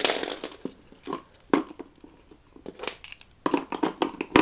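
Makeup brushes and a plastic cup being handled on a table: a rustle at first, then a string of irregular light clicks, taps and scrapes.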